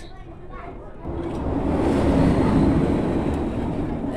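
A Test Track ride vehicle passing on the elevated outdoor track overhead: a rush of wheels and air that swells from about a second in, peaks midway and fades.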